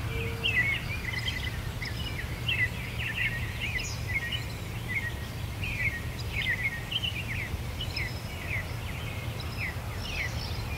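Songbirds chirping repeatedly, in quick short notes, over a steady low rumble.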